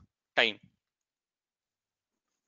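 A man's voice says one short word, followed by dead silence.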